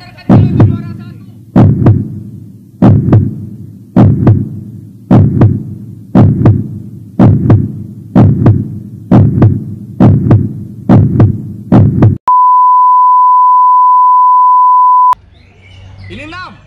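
A heartbeat sound effect, double thumps repeating about once a second and quickening slightly, about a dozen beats, followed near the end by a steady high-pitched beep lasting about three seconds.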